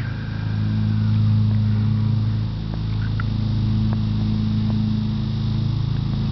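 A steady low motor hum, getting a little louder about a second in.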